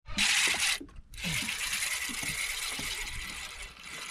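Saltwater spinning reel cranked to bring in a hooked fish: a short burst of reeling, a brief stop about a second in, then about three seconds of steady reeling with the fine rapid clicking of the reel's gears.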